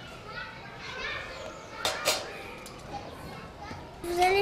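Young children's voices murmuring and chattering in the background, with two sharp clicks close together about two seconds in.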